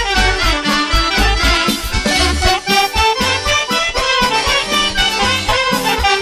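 Instrumental break of live Vlach folk music: a fast accordion-led melody over a steady bass beat, with no singing.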